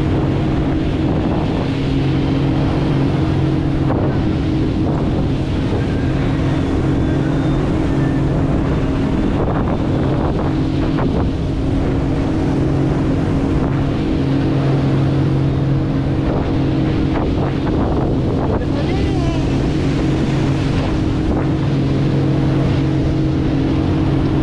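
Motorboat under way at a steady cruising speed: a constant engine drone mixed with wind buffeting the microphone and water rushing past the hull.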